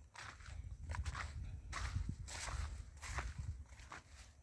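Footsteps of a person walking over dry soil and dead grass, about two steps a second, over a low rumble.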